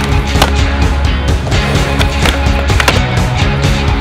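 Skateboard wheels and deck on a concrete bowl, with several sharp clacks as the board hits the coping and the ground: one right at the start, another about half a second in and a cluster around two to three seconds in. Loud music with a heavy bass plays over it throughout.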